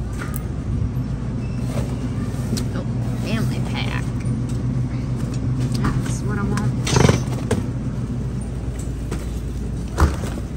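A cardboard box of frozen breakfast sandwiches is slid and pulled off a freezer's wire shelf, with a sharp bump about seven seconds in. Under it are a steady low hum and faint voices.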